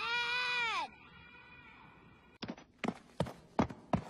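A single drawn-out cry, its pitch rising then falling, lasting just under a second. After a pause, a run of heavy thuds starts about halfway through, roughly three a second.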